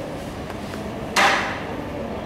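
Marker knocking once against a whiteboard, a sharp tap a little over a second in, over low room noise.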